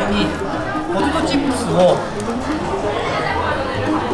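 Chatter of several voices talking, with no other distinct sound standing out.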